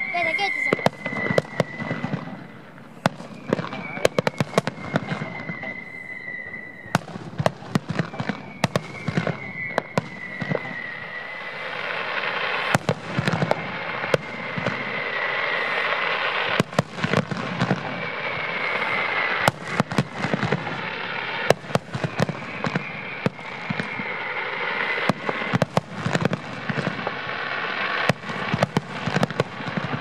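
Fireworks finale: aerial shells bursting in rapid, irregular bangs, with several long whistles that each fall slightly in pitch. From about halfway through, a dense crackling builds under the bangs.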